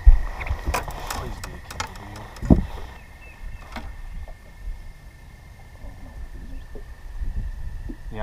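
Heavy thumps and knocks on a bass boat's carpeted deck as a freshly landed bass is handled and laid on a measuring board: the loudest thump right at the start, another about two and a half seconds in, then softer taps and rustling.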